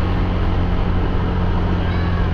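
Motor scooter engine running steadily while riding along, with wind rushing over the microphone.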